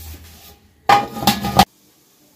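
An aluminium steamer lid is set down on the pot, clattering in a quick run of metal knocks with a brief ringing, lasting under a second, about a second in.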